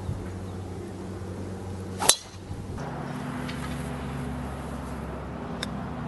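A golf club striking a ball off the tee: one sharp crack about two seconds in, over a steady low hum. A fainter click follows near the end.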